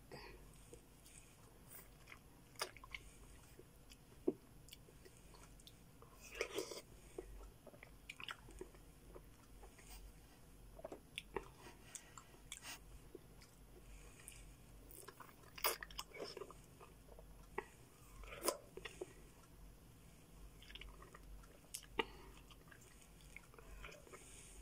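A person biting and chewing soft melon slices close to the microphone: faint chewing with irregular short clicks and mouth smacks scattered throughout.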